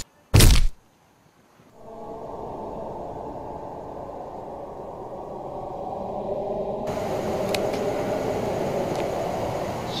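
Horror-film sound design: a loud thud just after the start, about a second of silence, then a low, rough drone that begins about two seconds in and slowly grows louder, with a faint hiss added about seven seconds in.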